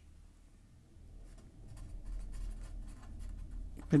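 Felt-tip pen writing a word by hand on paper: a quick run of short scratching strokes that starts about a second in.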